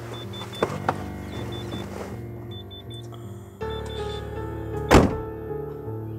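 Drama background music with a steady bass line. Over it come two light clicks a little after the start, and about five seconds in a single loud thud of a car door being shut.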